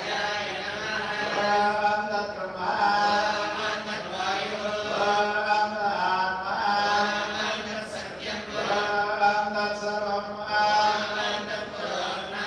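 Male Hindu priest's voice chanting Sanskrit mantras of the temple wedding ritual into a microphone, in phrases of a few seconds with short breaks between them, over a steady low hum.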